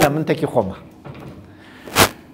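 A man speaking briefly, then a pause and a single sharp knock near the end.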